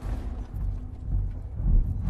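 A deep rumbling boom from a film trailer's soundtrack. It starts suddenly at the cut to black, comes in uneven swells and is loudest near the end.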